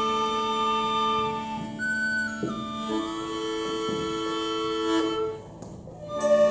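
A children's traditional Irish music group playing a slow passage of long held notes, with flute to the fore. The notes change every second or two, and the music falls away briefly just before the end.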